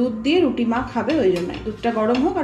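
A voice singing a melody in long gliding notes, with a metal spatula clinking and scraping on a flat roti pan as a roti is turned.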